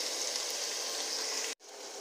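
Chicken pieces and onions sizzling in a frying pan, a steady hiss that cuts off suddenly about a second and a half in and comes back quieter.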